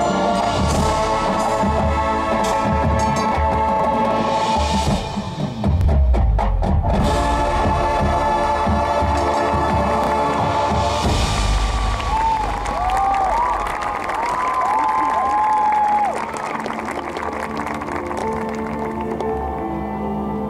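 High school marching band's brass and drums playing the last bars of their show, with held chords and heavy drum hits around six seconds in. From about eleven seconds in, the crowd cheers over the band's closing sound.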